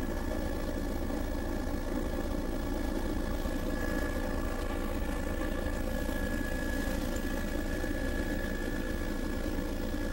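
Steady drone of a low-flying survey aircraft's engine, heard from inside the cabin, with a thin steady whine above it.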